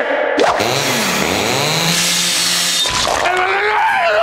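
A sudden crashing, breaking sound effect starts about half a second in and runs for about two and a half seconds as a hissy rush with sweeping tones. A sharp hit comes about three seconds in, followed by a man's yell near the end.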